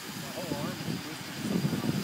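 Dodecacopter, a twelve-rotor RC multicopter, hovering and manoeuvring low, its propellers making a steady whirring hum, with faint voices in the background.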